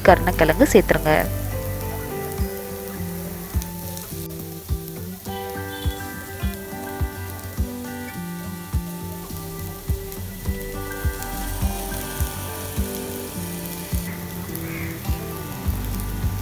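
Onions, curry leaves, dried red chillies and boiled yam slices frying in oil in a pan: a steady sizzle. Background music with a melody over a regular beat plays alongside.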